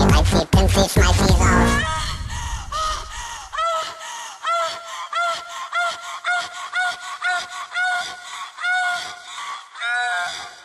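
Electronic dance music remix: for about two seconds the full beat and bass play, then the bass drops out into a breakdown of short, honk-like pitched calls repeating about twice a second over a thin high backing.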